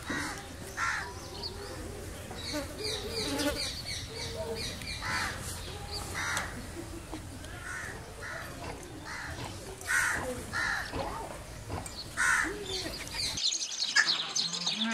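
Crows cawing: several harsh calls spaced a second or more apart, over light chirping of small birds and a steady low background rumble.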